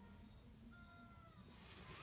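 Near silence: faint room tone, with a faint, drawn-out high tone that falls slightly about a second in.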